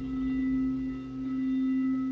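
A singing bowl ringing on after a strike: a steady low tone with fainter higher overtones, dipping and swelling slowly in loudness.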